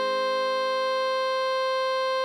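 One long steady note, written A5 for alto saxophone, played with a synthesized saxophone sound over a held Ab major keyboard chord.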